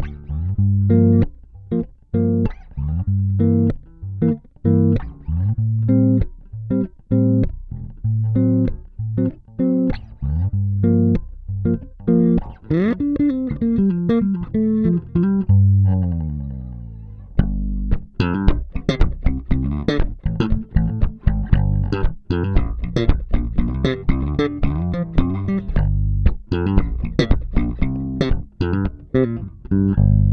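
Kiesel LB76 electric bass with active pickups, played through an Aguilar AG 700 bass head with its EQ set flat. It starts with plucked low notes and lines, slides up and down in pitch from about twelve seconds in, then plays a faster, more percussive passage with sharp attacks.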